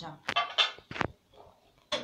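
A person's voice for a moment, too short or too unclear to make out as words, and a sharp click about a second in.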